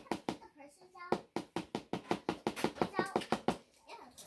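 A rapid, even run of sharp taps or knocks, about six a second, with a high child's voice sounding over it in short bits.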